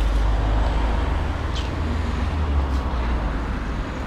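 Outdoor street background noise: a steady low rumble like road traffic, with a brief high squeak about one and a half seconds in.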